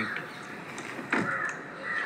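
A single short bird call about a second in, over a quiet background.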